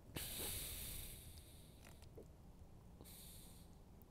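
Quiet soft hissing: one stretch of about a second and a half at the start and a shorter one near the end, with a few faint clicks as a knife cuts through squid bait.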